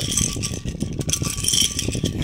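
Letter pieces rattling and clattering inside a perforated cup as it is shaken by hand, a continuous dense run of small clicks.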